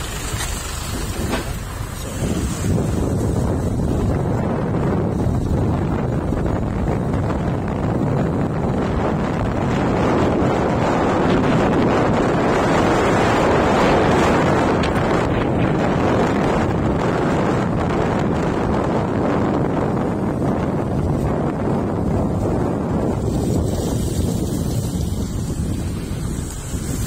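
Wind rushing over the microphone while riding a motorcycle, with engine and road noise beneath it. It swells a couple of seconds in, is loudest in the middle, and eases a little near the end.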